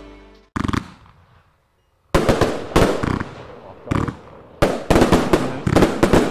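Pyro Specials 'God Father' firework cake firing: one sharp bang about half a second in, a short pause, then from about two seconds in a run of loud shots at uneven intervals, each fading off quickly.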